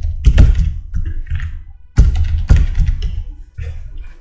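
Typing on a laptop keyboard: irregular keystrokes, some landing as heavy knocks and thumps, loudest just after the start and again about two seconds in.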